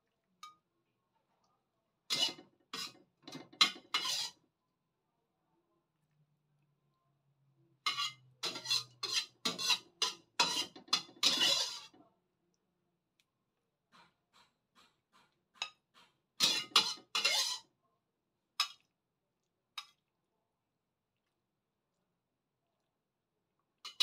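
A utensil clinking and scraping against a metal wok and a ceramic plate while stir-fried mushrooms are dished up. The clatter comes in three short runs, a couple of seconds in, about eight seconds in and around sixteen seconds in, with a few lone clinks after and silent gaps between.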